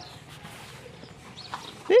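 A short, high-pitched animal call near the end, rising then falling in pitch.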